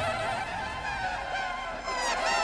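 A thin buzzing whine made of several held tones, some drifting down in pitch near the end, with no bass underneath.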